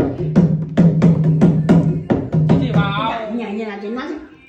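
Dholak struck by hand in a quick run of strokes for about the first two and a half seconds, its bass head ringing under the slaps. A voice follows over the last second or so.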